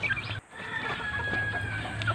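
Gamefowl chickens in a pen clucking softly, with short faint calls and a faint drawn-out call near the middle.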